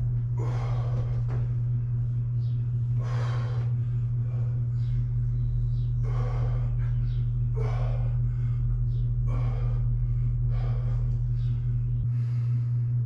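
A man breathing hard through a set of reverse-grip barbell curls, with a short forceful breath about every one and a half seconds, over a steady low hum.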